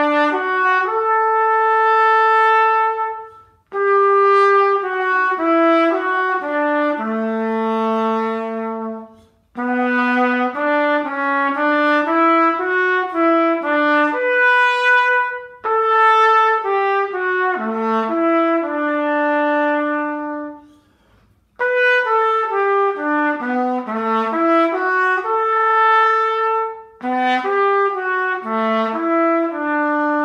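Unaccompanied solo trumpet playing a grade-three exercise melody, the notes moving stepwise with some longer held notes, in phrases broken by short pauses for breath every few seconds.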